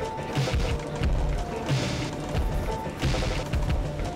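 Background music with a steady beat of sharp drum hits over a bass line.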